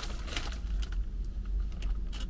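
Light, irregular clicks and plastic rustles as a car stereo head unit's metal chassis is handled inside its clear plastic bag, over a steady low hum.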